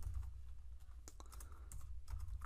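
A few scattered keystrokes on a computer keyboard, faint, over a steady low hum.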